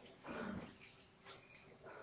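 Quiet lecture-room tone with one brief, faint sound about a quarter second in.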